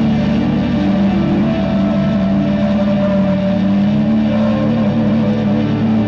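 Rock band playing live through a PA: amplified guitars and bass hold long, sustained notes in a loud, dense, steady wall of sound.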